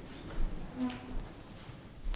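A congregation getting to its feet from wooden pews: shuffling and low thumps, with one short pitched squeak near the middle.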